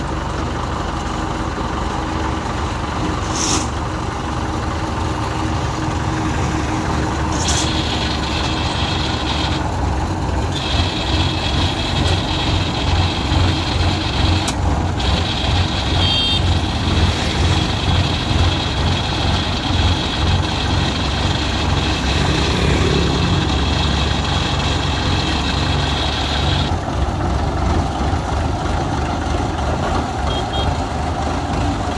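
Diesel engine of a small tracked farm tractor running steadily, its low chugging beat growing stronger about ten seconds in. A steady high-pitched whine runs over it for most of the time, breaking off briefly a few times and stopping near the end.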